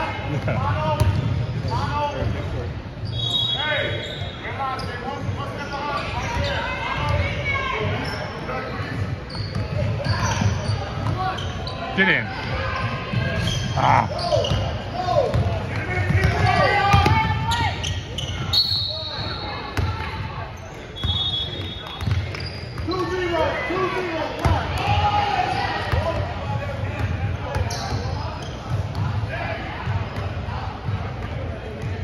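Basketballs bouncing on a hardwood gym floor during a game, with players' and spectators' voices echoing in a large gym. A few short high-pitched tones cut through, about three seconds in and again around nineteen and twenty-one seconds.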